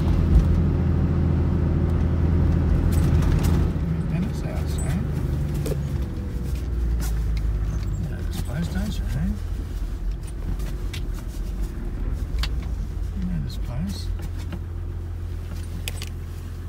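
Toyota LandCruiser 80 Series heard from inside the cabin while driving: a steady low engine drone with road noise, slowly getting quieter as the vehicle slows to a stop.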